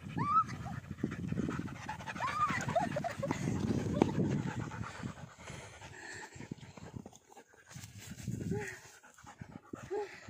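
A husky panting hard and fast, with a few short high whines in the first few seconds and another lower one near the end. The panting eases after about five seconds.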